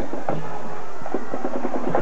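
Band music in the stadium, with drums and held notes in the second half, picked up by the broadcast's field microphones.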